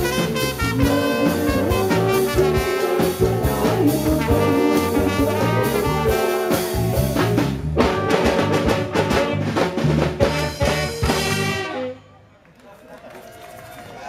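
Live band playing an upbeat, ska-like number: trumpet and saxophone over drum kit, cymbals and bongos. The music stops abruptly about twelve seconds in, leaving only a faint background.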